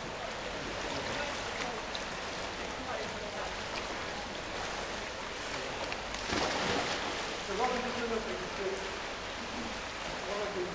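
Indoor pool ambience: a steady echoing wash of swimmers splashing through the water, with a louder stretch of splashing about six seconds in. Faint voices echo in the hall near the end.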